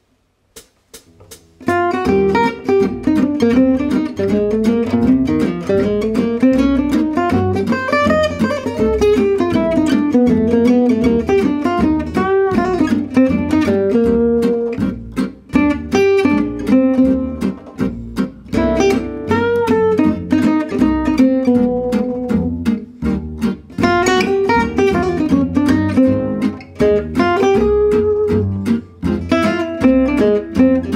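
Gypsy-jazz guitar solo on an oval-hole Selmer-Maccaferri-style acoustic guitar, starting about two seconds in. Single-note lines rise and fall in phrases with short rests between them, over a steady swing rhythm backing.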